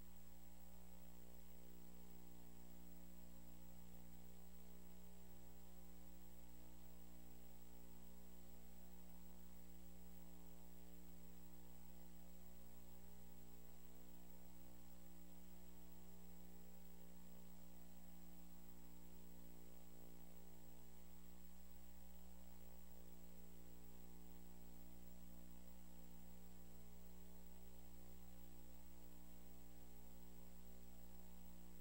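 Steady electrical mains hum: a low buzz with many overtones, unchanging throughout, with a faint steady high tone above it.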